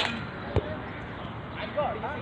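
A basketball bouncing once on a hard court about half a second in, with players' voices calling out near the end.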